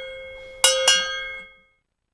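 A handheld cowbell struck twice, about a quarter second apart, each strike ringing with a bright metallic clank. The ringing fades and the sound cuts off about a second and a half in.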